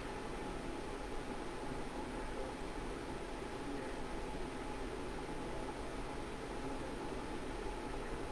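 Steady, even background hiss with a faint steady tone running through it and no distinct events.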